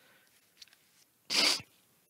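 A short, sharp breath noise from a person, about a third of a second long, about a second and a half in. Before it, quiet room tone with a couple of faint clicks.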